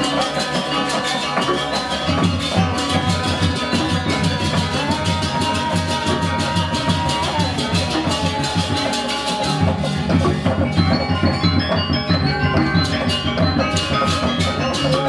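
Balinese gamelan playing: ringing metallophones and gongs over a dense, fast drum rhythm, with the deep drumming coming in strongly about two seconds in.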